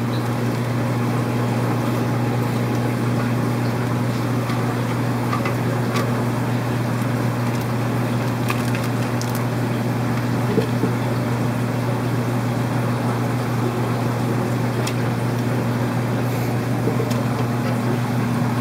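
Steady low hum and hiss of a fish room's running aquarium pumps and aeration, with a few faint clicks of plastic bags and containers being handled.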